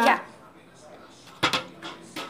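Orange plastic bowls being handled: a single sharp knock about a second and a half in, then a lighter click just before the end.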